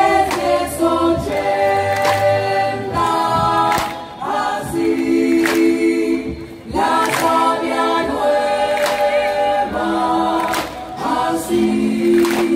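Live band music: a brass section and keyboard play held chords that change every second or two, punctuated by sharp percussion hits.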